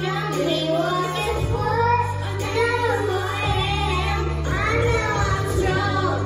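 Young girl singing a pop song into a microphone through the church's sound system, over an instrumental backing with steady low bass notes.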